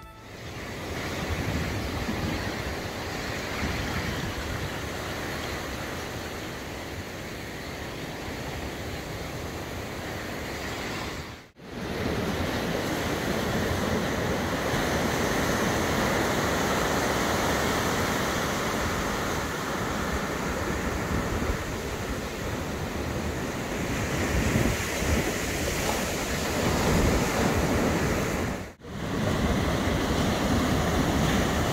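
Ocean surf breaking on a sandy beach, a steady wash of waves with wind on the microphone. The sound drops out briefly twice, about a third of the way in and near the end.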